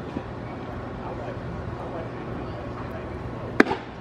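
A pitched baseball smacks into the catcher's leather mitt once, a sharp crack near the end, over steady ballpark background noise.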